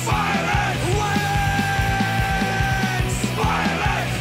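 An Oi! punk rock song: a full band with a steady drum beat, long held notes and shouted vocals.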